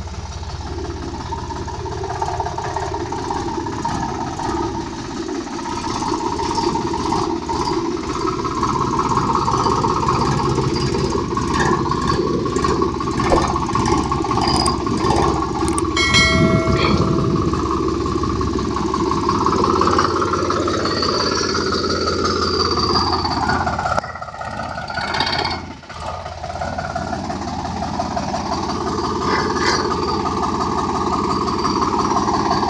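Sonalika DI 745 III tractor's three-cylinder diesel engine running steadily as the tractor is driven. A brief electronic chime sounds about halfway through.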